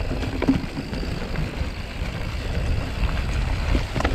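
Mountain bike riding down a dirt trail: a steady low rumble from the tyres and wind on the handlebar camera's microphone, with scattered clicks and rattles from the bike over the rough ground.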